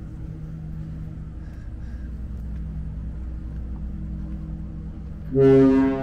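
A ferry's engines run as a steady low hum, then a little over five seconds in the ship's horn sounds a loud, deep, steady blast.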